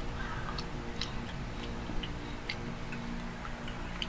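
Eating sounds: a metal spoon scraping and clicking against a plastic yogurt cup, with soft irregular clicks and mouth sounds over a faint steady hum.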